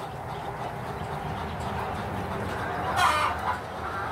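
A chicken calls once, loudly, about three seconds in, over a steady low background noise.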